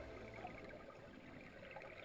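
Near silence: a faint low hiss in a gap between two pieces of background music.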